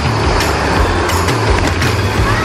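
Metal rollers of a long roller slide rumbling steadily as riders on mats roll down it. The rumble is loud and continuous.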